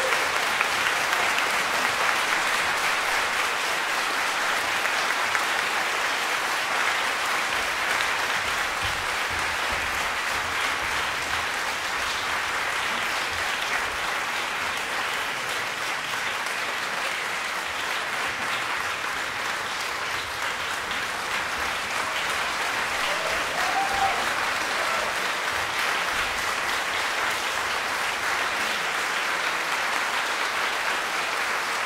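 Audience applauding: a steady wash of clapping that eases slightly midway and picks up again.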